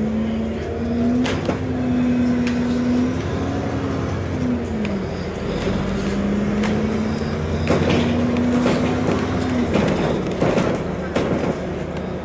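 Interior sound of a moving bus: the drivetrain runs with a steady whine that shifts pitch a few times, dropping about five seconds in and again near the end, over a low rumble. Scattered clicks and rattles come from the cabin.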